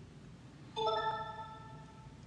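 A single chime about three-quarters of a second in: several tones at once that start together and ring on, slowly fading.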